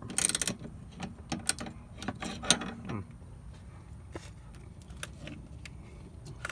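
Metal clicks and clinks of a 19 mm ratcheting wrench being worked on a coil spring compressor's bolt. There is a quick run of ratchet clicks at the start and a few sharper clicks over the next two seconds, then only sparse faint ticks.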